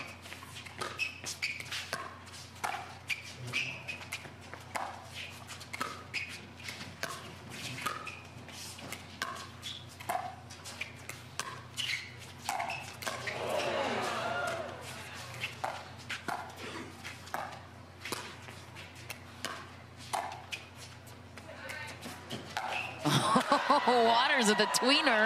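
Pickleball rally: paddles striking a hard plastic pickleball over and over, a sharp pop about every second. Voices rise briefly in the middle and swell loudly near the end.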